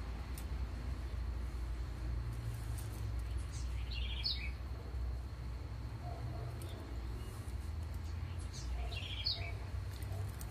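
A bird chirping twice, two short high calls about four seconds and nine seconds in, over a steady low background hum.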